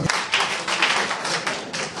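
Audience clapping: many hands at once, a dense patter that eases off toward the end.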